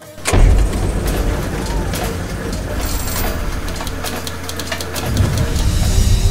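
Edited outro sound effect with a deep bass and sharp clicking hits, coming in abruptly about a third of a second in and staying loud.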